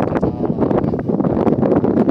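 Wind buffeting the microphone: a loud, uneven rumbling noise that rises and falls.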